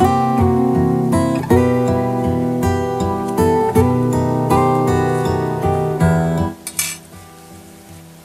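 Background music on acoustic guitar, a run of picked notes that drops away about six and a half seconds in.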